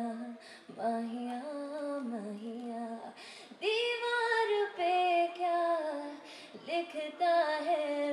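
A woman singing solo into a microphone, with no instruments heard: long held notes that slide and waver in pitch, with short breaths between phrases.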